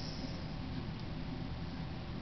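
Quiet room noise and microphone hiss, with one faint tick about a second in from a kitchen knife blade scoring lines into a small piece of polymer clay on paper.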